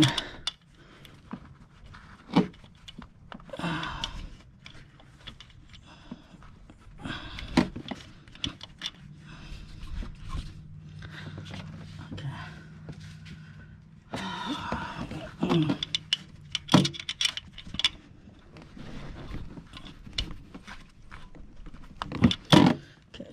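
Hand ratchet on a swivel and extension clicking in short irregular runs, with metal tool clinks and knocks, as a bolt is turned down until it is tight.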